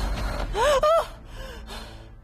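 A woman gasping and crying out in alarm: two short, sharp cries with rising-then-falling pitch about half a second in, then a fainter one.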